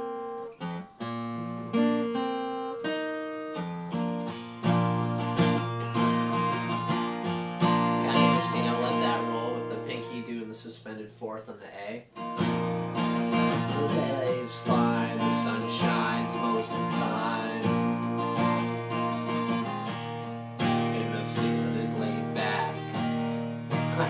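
Yamaha steel-string acoustic guitar, capoed at the first fret, playing a chord passage in A shapes (sounding in B flat). The first few seconds are single picked notes and muted hits over E and A shapes, then it moves into steady strummed chords.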